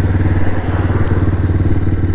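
125cc motorcycle engine running at a steady pitch while riding, with road noise.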